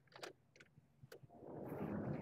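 A few faint clicks, then a soft rush of noise that swells over the last second.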